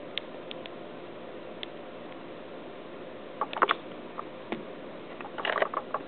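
Scattered light clicks and taps from fingers pressing the buttons of a Palm Treo Pro smartphone and handling it. There are a few single ticks early, then small bursts of clicking about three and a half seconds in and again near the end, over a steady low hiss.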